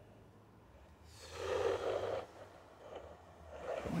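A person's heavy exhale close to the phone's microphone, starting about a second in and lasting just over a second.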